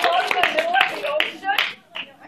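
An audience clapping, with many voices calling out over it; the clapping and voices die away about a second and a half in.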